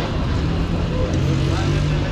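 Street traffic noise with a steady low engine hum, and people talking in the background.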